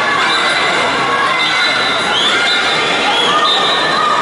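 Spectators and teammates cheering and yelling during a swimming race, with many high-pitched shouts rising and falling over a steady din of crowd noise.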